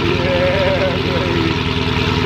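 Red Dodge Charger's engine idling loudly through its exhaust, a deep steady rumble.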